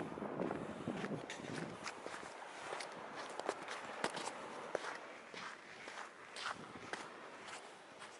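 Footsteps on a sandy beach: a run of short, irregular crunching steps, with a low rumble of wind or handling in the first second or two.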